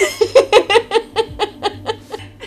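A woman laughing: a quick run of about a dozen short laugh pulses, about six a second, loudest at first and growing softer toward the end.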